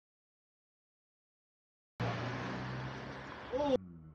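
Two seconds of dead silence, then steady outdoor background noise with a low hum. A short shouted voice comes near the end and is cut off suddenly.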